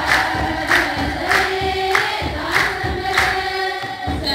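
Congregation singing an Ethiopian Orthodox hymn together, with hand claps keeping a steady beat of about three claps every two seconds.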